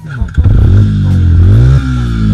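Quad bike (ATV) engine revving close up: the pitch rises twice, falling back between, then drops sharply near the end.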